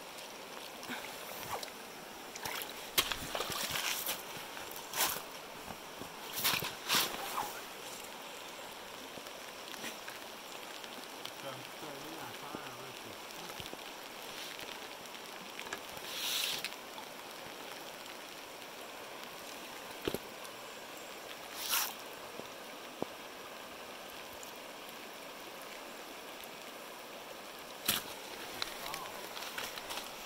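Shallow river running steadily over rocks, with a few brief, sharp louder noises scattered through.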